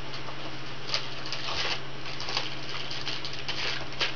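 CD-ROM drive seeking and reading a live Ubuntu CD during boot: an irregular patter of faint clicks over a steady low hum.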